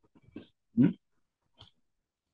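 A person's single short questioning "hmm?" about a second in, with a couple of faint ticks around it and otherwise near silence.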